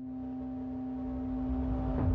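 A broadcast title sting: one sustained low tone with overtones, swelling steadily louder, with a deep rumble building underneath near the end.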